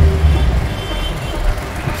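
Road and traffic noise heard from inside a moving vehicle in city traffic. A low rumble eases off about half a second in, leaving a steady noise.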